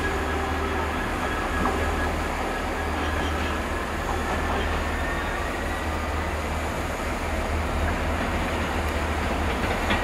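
Class 66 diesel locomotive running light, approaching slowly with a steady low engine drone, and faint wheel squeal from the curved track.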